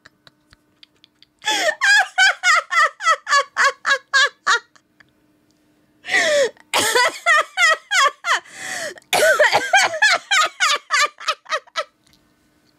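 A woman laughing hard and high-pitched, in three long bouts of rapid ha-ha pulses with short breaks between them.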